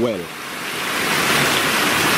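Mountain stream running over rocks, a steady rush of water that swells over the first second and then holds.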